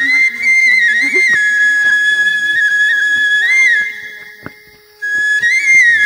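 Background flute music: a high melody of long held notes with short ornamental turns, breaking off about four seconds in and coming back about a second later.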